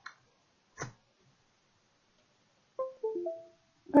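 A click as a USB plug seats into a computer port, then a Windows device-connected chime: a short run of about three plucked-sounding notes stepping downward, signalling that the micro:bit board has been detected.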